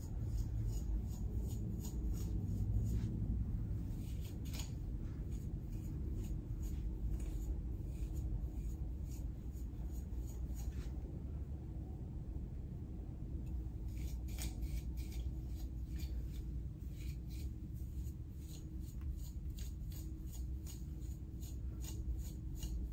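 A comb raked repeatedly through a thick afro wig: short scratchy strokes that come in runs, thickest near the start and again in the second half, over a steady low room hum.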